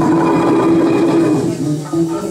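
Live improvised jam by electric guitars, bass guitar and violin: a dense sustained passage held on one low note, thinning out and dropping in level about one and a half seconds in.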